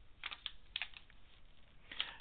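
A handful of faint short clicks in two small clusters within the first second, like keys or a mouse being clicked.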